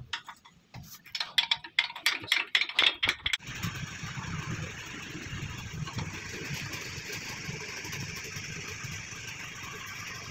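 Sharp metal taps and clinks of steel tools worked against a pickup's front wheel hub during a wheel-bearing job, coming quickly for about three seconds. Then a steady mechanical running noise with a low rumble sets in and holds.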